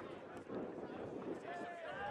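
Men's voices talking on the field, faint and distant, over steady outdoor background noise.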